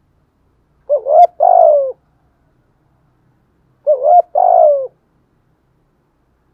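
Spotted dove cooing: two phrases about three seconds apart, each a short rising note followed by a longer coo that falls in pitch.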